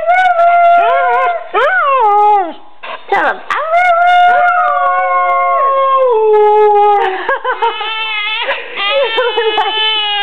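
A dog howling its 'I love you' in long, drawn-out notes that slide up and down, several in a row. In the last few seconds a baby starts crying.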